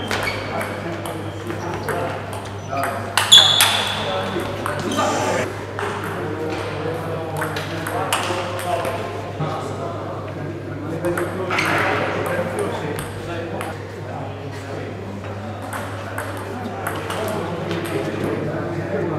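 Table tennis ball clicking off bats and the table during rallies, a run of sharp pings with short gaps, the loudest about three seconds in.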